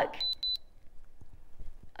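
Two short high electronic beeps in quick succession, the countdown signal of a live TV shopping price-drop auction as the timer runs out.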